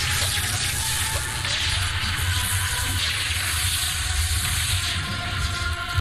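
Television sound effect of electrical energy surging through a transmitter mast: a steady, loud rushing hiss over a low hum.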